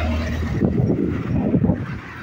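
Wind buffeting the microphone of a phone carried on a moving bicycle: an irregular, gusty rumble that drops off near the end.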